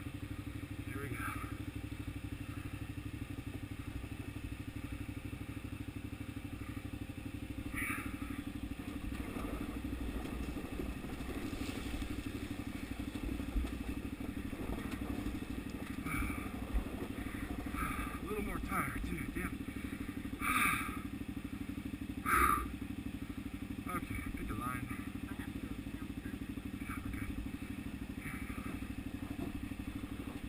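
KTM 990 Adventure's V-twin engine running at low, steady revs as the loaded bike creeps down a steep rocky trail, with a few short knocks from the bike going over rocks about twenty seconds in.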